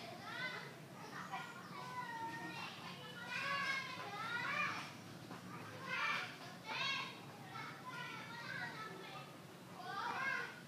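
Children's voices in the background, talking and calling out in short, high-pitched phrases.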